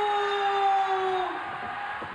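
A ring announcer's drawn-out call of a wrestler's name, one long held note falling slightly in pitch and breaking off about one and a half seconds in. Crowd noise from the arena continues under it and after it.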